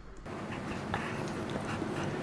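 Steady room noise with a few faint clicks.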